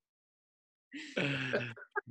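Silence for about the first second, then a person's short, throaty vocal sound over a video-call connection, with a brief blip near the end.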